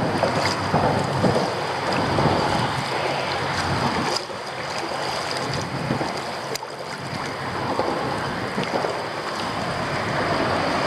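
Wind buffeting the microphone over choppy open water, with small waves lapping against the kayak's hull.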